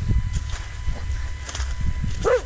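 Footsteps on a dirt path littered with dry leaves, a faint step about every half second, over a steady low rumble on the microphone.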